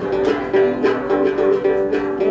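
Đàn tính, the long-necked Tày lute with a gourd body, played solo in a quick run of plucked notes.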